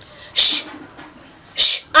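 A woman's voice: two short hissing sounds about a second apart, like drawn-out 'sh' or 's' syllables, then voiced speech begins at the very end.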